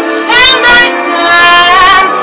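A woman singing a sustained melodic line with vibrato into a microphone, her voice sliding up in pitch about half a second in.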